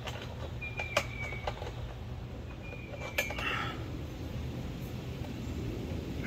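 Sharp metallic clicks, twice, from mast bracket hardware being tightened by hand. Each comes with a thin, high, steady whistle-like tone about a second long, over a steady low rumble.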